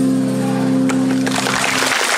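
The final chord on acoustic guitars ringing out and then stopping just before the end, while the audience begins clapping about a second and a half in.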